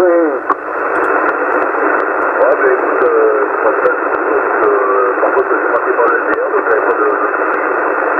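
CB transceiver on single sideband (USB) receiving a weak, distant station: a voice barely readable under a steady, narrow-band hiss, with faint regular clicks.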